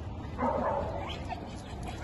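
A dog barks during rough play between dogs: one call about half a second in, then a couple of short yips.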